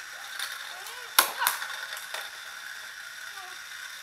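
Plastic Beyblade Burst spinning tops clashing in a plastic stadium: one sharp crack about a second in, then two smaller clacks.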